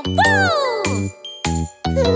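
Children's song backing music with bass notes and bright tinkling tones. A high sliding note falls away over the first second, the music briefly drops out, then it returns.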